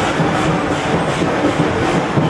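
Loud, steady street noise from a marching procession: many overlapping voices over traffic, with no single sound standing out.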